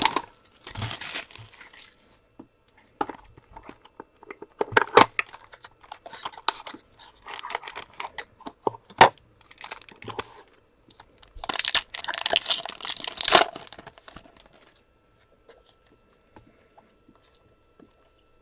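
Cellophane wrap being torn and crinkled off a small cardboard trading-card box, with the box's cardboard flaps opened and cards handled, in irregular bursts. The loudest crinkling comes for a couple of seconds past the middle.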